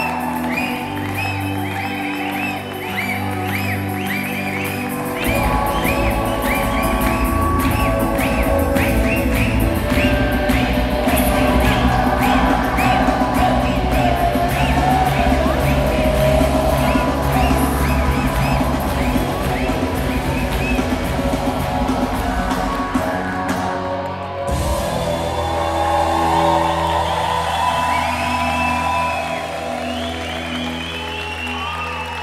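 Live rock band playing in a theatre. A repeated high melodic figure runs over sustained chords, then the full band with drums and bass comes in loudly about five seconds in. The band cuts out suddenly a few seconds before the end, leaving softer sustained playing.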